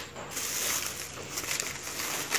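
Plastic grocery packaging rustling and crinkling as a pack of ground coffee is handled and set down on a foam tray, with a few light knocks.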